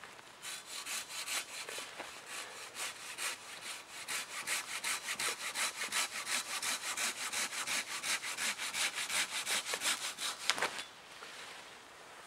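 Hand saw cutting through a birch log with fast, even strokes, about four a second. The sawing stops shortly before the end, when the cut goes through.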